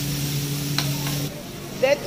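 Hot buffet griddle sizzling over a steady low hum, cutting off abruptly a little past halfway. A voice starts just before the end.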